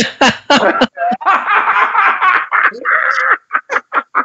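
Several men laughing together, with bits of laughing speech mixed in; near the end the laughter breaks into quick short bursts.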